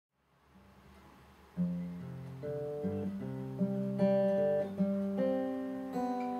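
Acoustic guitar starting up about one and a half seconds in, single notes picked one after another and left ringing into each other as broken chords, after a faint low hum.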